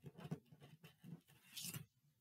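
Faint rustling and handling of paper cutouts, with a short louder rustle near the end.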